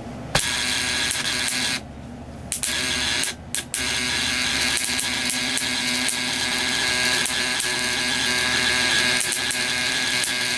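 Relay-buzzer ignition coil driver running, its high-voltage sparks snapping across a brass spark gap in a fast, steady crackling buzz. It starts about a third of a second in, cuts out briefly twice in the first few seconds, then runs on without a break.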